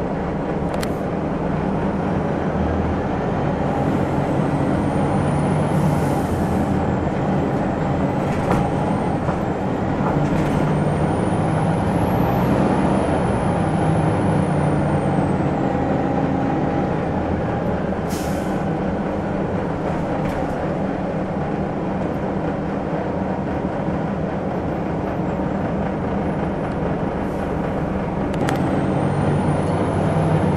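A 2001 Gillig Phantom transit bus's Detroit Diesel Series 50 engine running steadily under way, its pitch shifting as it drives, with a faint high whine that rises and falls a couple of times. There are brief hisses of air about 6 and 18 seconds in.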